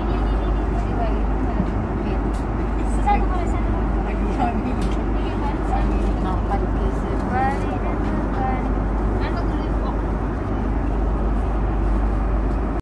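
Steady low rumble of an Airbus A330 airliner's cabin air system, with passengers talking in the background.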